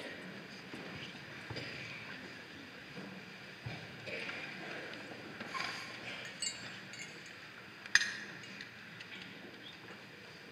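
Quiet church interior with scattered small knocks, clinks and shuffling as clergy move about at the altar, with one sharp clink about eight seconds in.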